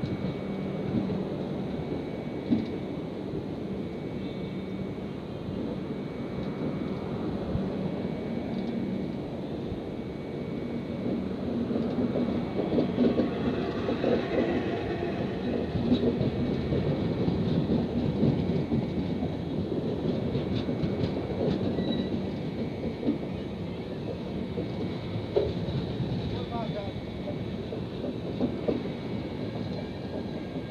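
Passenger coaches of a departing Indian Railways express rolling past, a steady rumble of wheels on rails with scattered clicks and clunks from the rail joints. The rumble grows louder about halfway through.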